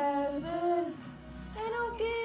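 A woman singing held, drawn-out notes that bend slightly in pitch, easing off about a second in before the next note starts.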